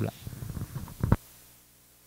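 Rumbling handling noise and soft voice sounds from a handheld microphone as it is lowered, ending in a sharp knock about a second in. The sound then cuts out abruptly to a faint steady hum.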